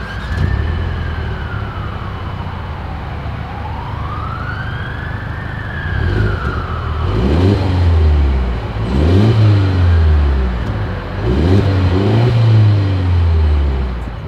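Exhaust of a 2023 Mercedes-Benz GLE 350's 2.0-litre turbocharged four-cylinder, heard at its rear dual exhaust outlets: idling steadily for about six seconds, then revved three times, each rev rising and falling. A slow rising-and-falling wail sounds in the background over the idle.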